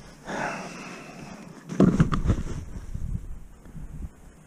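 A breathy exhale close to the microphone, then a quick cluster of knocks and rustles about two seconds in from gloved hands handling the ice-fishing rod and reel over the hole.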